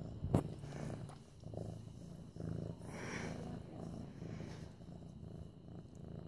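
Eight-month-old orange tabby kitten purring steadily while being petted, the purr swelling and fading in slow, even cycles. A brief thump sounds about a third of a second in.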